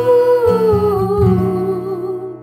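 A female voice holds one long wordless sung note that slides slowly down in pitch, over soft acoustic accompaniment chords: the closing note of a ballad.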